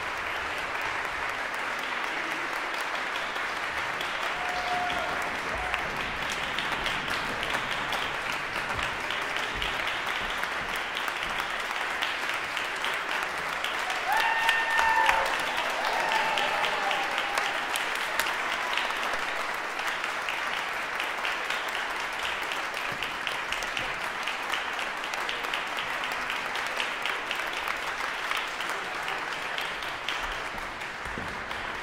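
Concert audience and orchestra players applauding steadily after a performance. About halfway through, a brief cheer rises over the clapping.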